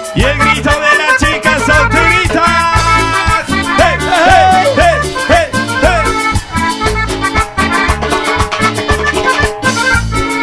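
Cumbia norteña music played by a band, a steady dance beat of bass and percussion under an instrumental melody line, with no singing.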